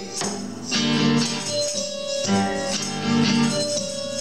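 Instrumental stretch of a live worship song: acoustic guitar strummed in rhythm over held electronic keyboard chords.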